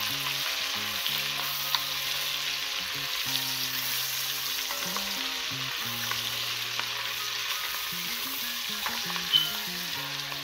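Andouille sausage and bacon pieces sizzling steadily in hot fat in an enameled cast-iron pot, stirred with a wooden spoon. A few sharp knocks cut through, the loudest near the end.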